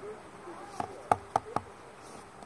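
Four short, quick knocks or taps in a row, the second the loudest.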